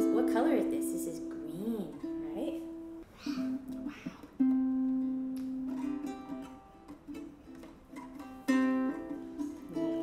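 Carbon-fibre Emerald Synergy harp ukulele strummed by a toddler's hands, the chords ringing on, with fresh strums about four and eight seconds in. A small child's voice is heard briefly near the start.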